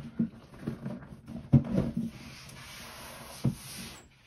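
A cardboard presentation box being handled and set down, with a sharp knock about one and a half seconds in. This is followed by a steady rustle of wrapping paper and a softer knock near the end.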